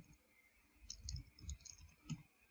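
Computer keyboard typing: a quick run of about seven faint key clicks, starting about a second in.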